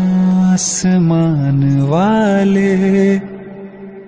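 Hindi film song: a singer holds long, drawn-out notes, sliding up in pitch about two seconds in, over soft accompaniment; the music drops quieter near the end.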